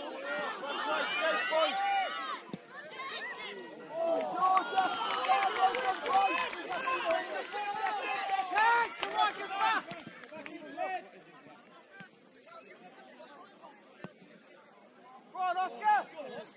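Many overlapping voices of players and spectators shouting and calling across a football pitch. The voices thin out in the last third, with one brief loud shout near the end.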